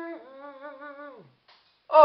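A tune hummed into a tiny toy trumpet, giving a buzzy, wavering note that slides down in pitch and stops just over a second in.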